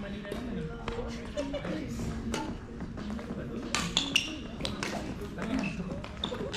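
Badminton rally: sharp, irregular clicks of rackets hitting the shuttlecock and shoes on the court, over voices in an echoing hall.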